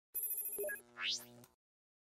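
Short electronic intro sound effect for a logo reveal: about half a second of high ringing tones with a rapid flutter, then a whoosh rising in pitch over a low hum. It cuts off about a second and a half in.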